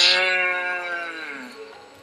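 One long, drawn-out voice-like cry, held on a single vowel and sliding slowly down in pitch as it fades out over about a second and a half.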